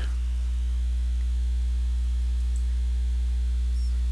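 Steady electrical mains hum: a loud, unchanging low drone with a stack of higher buzzing overtones, the hum that lies under the whole recording.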